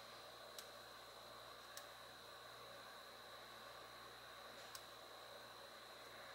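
Near silence with faint steady hiss and a thin high tone, broken by three faint, irregularly spaced taps of a fingertip on the Touch ID key of an M1 MacBook Air.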